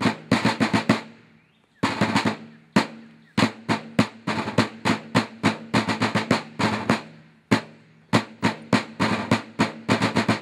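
Two wooden-shelled snare field drums beaten with wooden sticks, playing a martial cadence of sharp strokes and short rolls. The drumming breaks off briefly after about a second and again around three seconds in, then runs on.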